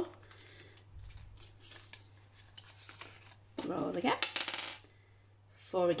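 Light rustling and small clicks of plastic binder sleeves and paper banknotes being handled as pages are turned and notes tucked in, with a brief stretch of voice a little past halfway.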